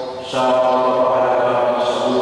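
A priest chanting the Mass on a near-steady held note, his voice carried through a microphone. It pauses briefly at the start and resumes about a third of a second in.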